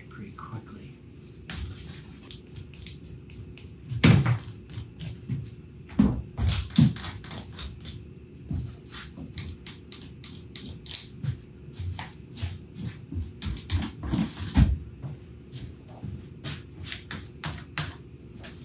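Plastic spreader scraping polyester body filler (Bondo) over seams, a quick run of short scraping strokes, a few each second. Louder knocks come about four and about six seconds in.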